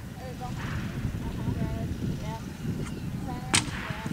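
Outdoor ambience with a low rumble and faint short chirps, and one sharp crack about three and a half seconds in.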